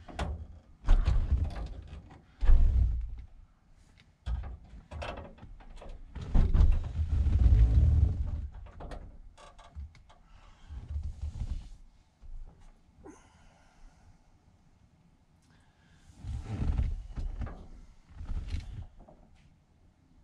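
Irregular clunks and knocks from the sliding-door latch mechanism of a 1982 VW Vanagon being worked by hand with the inner door panel off, with a quieter pause in the middle. The mechanism has worked loose.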